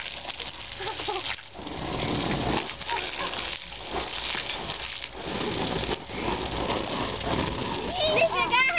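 Water from a garden hose spraying and spattering onto a trampoline mat, a steady hiss that drops away briefly a few times, with children's voices now and then.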